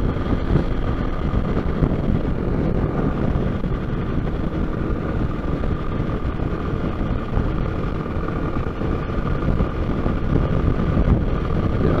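Motorcycle engine running at a steady highway cruise, with wind rushing over the rider's microphone and a faint steady whine.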